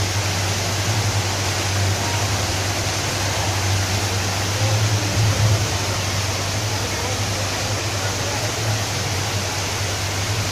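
Decorative water fountain, its jets splashing down into the pool: a steady rushing hiss with a low rumble underneath.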